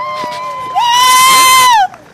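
A loud, sustained high whoop of cheering from one close voice, rising into a held note, getting much louder about a second in, then sliding down in pitch and stopping just before the end. Fainter cheering voices glide beneath it.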